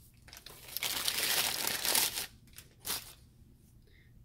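Taco Bell paper takeout bag crinkling as the crunchwrap is pulled out of it: about two seconds of continuous paper rustling, then a couple of short rustles.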